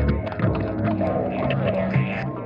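Electric guitar played through effects pedals, layered over a looped guitar part: low sustained notes held under picked higher notes.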